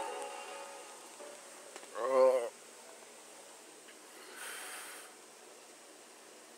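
Music dying away, then one short vocal sound about two seconds in and a soft burst of hiss a couple of seconds later, over a low background hiss.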